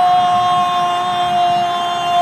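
A football commentator's drawn-out goal cry: one long held vocal note, loud and steady, sinking slightly in pitch.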